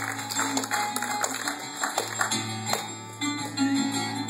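Irish-tuned bouzouki strummed in a steady rhythm, the instrumental intro of a song before the singing comes in.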